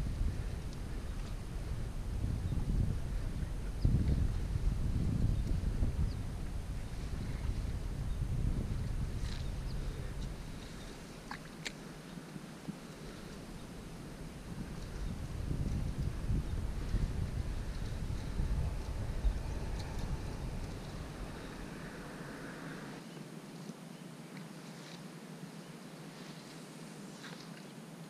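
Wind buffeting an action camera's microphone in gusts: a low rumble for the first ten seconds that drops away, returns for several seconds and fades out near the end, with a few faint clicks over it.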